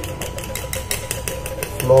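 A spoon beating a thick paste of instant coffee, sugar and a little cold milk in a small steel bowl, scraping and tapping against the metal about five or six strokes a second as the paste is whipped for frothy coffee.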